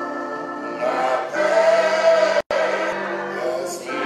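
Gospel music with a choir singing long held notes. The sound cuts out completely for an instant about two and a half seconds in.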